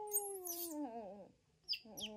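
A woman and a newborn baby monkey cooing to each other: one long cooing tone that slides slowly down in pitch and fades about a second in, then a brief high squeak near the end.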